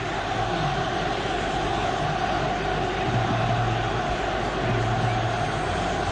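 Stadium crowd noise in an old television broadcast recording: a steady, even wash of many voices.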